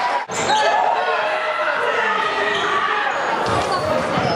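Basketball game sound in a large echoing gym: a ball bouncing on the court amid players' voices. The sound drops out briefly about a quarter second in.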